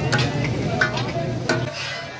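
Hot, sizzling mutton keema being scraped with a metal spatula and dropped onto a steel plate, with sharp metal clinks, the loudest about a second and a half in. A low steady hum underneath stops near the end.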